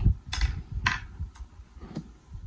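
Close-miked chewing of a mouthful of boiled egg in sauce: a low rumble of chewing broken by about four sharp, wet mouth clicks roughly half a second apart.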